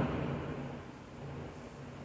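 A pause in speech filled with faint, steady room noise, a low even hiss.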